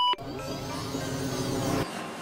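Electronic sound effect over a title graphic: a brief high beep at the start, then a swelling musical whoosh that builds and cuts off abruptly near the end.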